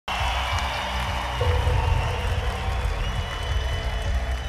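Live concert music through a large arena sound system, with a deep pulsing bass and a high held tone, over the noise of the crowd.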